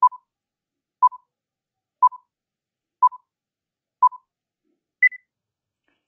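Countdown timer beeps: five short, equal beeps one second apart, each followed at once by a fainter repeat, then one higher-pitched beep about five seconds in that marks the end of the count.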